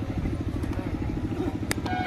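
An engine running steadily in the background, a low, rapid, even throb, with a single sharp click near the end.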